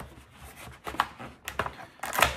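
A folding knife cutting open a product's packaging: a few sharp clicks and scrapes, the sharpest about a second in.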